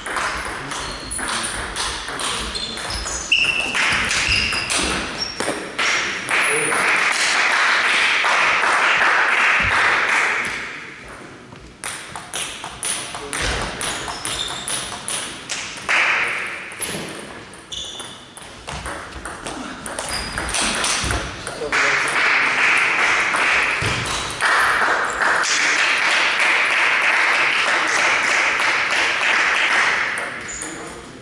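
Table tennis rallies: the ball clicking off the bats and bouncing on the table in quick strokes. Twice, after points are won, several seconds of loud crowd noise from onlookers in the hall, about six seconds in and again from about twenty-two seconds to the end.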